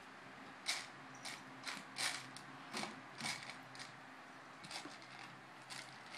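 Loose plastic Lego bricks clicking and clattering as pieces are picked out and handled, a string of short irregular clicks.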